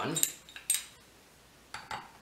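Steel gears and shaft of a lawn mower transaxle clinking as the bevel-gear assembly is handled and set back into the gear case: a few sharp metal clicks in the first second, a short pause, then another clink near the end.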